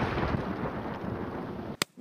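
The fading tail of an explosion sound effect, dying away steadily and then cut off abruptly just before the end.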